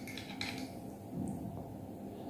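Quiet room with a faint click or two of a metal fork against a ceramic plate in the first half second as noodles are twirled, then a soft low rustle about a second in.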